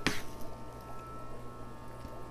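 Steady low hum with a faint thin whine above it, and one brief click right at the start.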